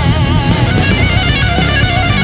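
Rock entrance-theme music: electric guitar playing over a drum kit at a steady, loud level.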